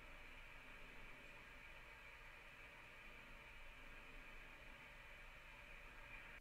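Faint, steady cabin noise of a corporate jet in flight, the soundtrack of the cockpit footage being played back.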